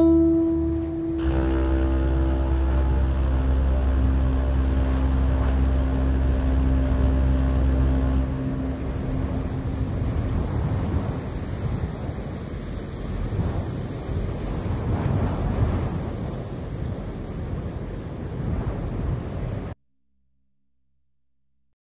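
Ambient soundtrack: a held drone chord over a deep bass tone, which gives way about eight seconds in to a rushing, swelling wash of noise like surf or wind. It cuts off suddenly just before the end.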